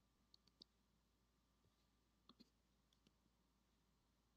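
Near silence: faint room tone with a few soft, short clicks, three just after the start and a cluster of four a little past the middle.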